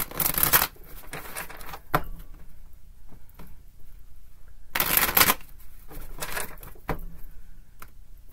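A deck of tarot cards being shuffled by hand, in short bursts, with two longer shuffles at the start and about five seconds in and a few light clicks between.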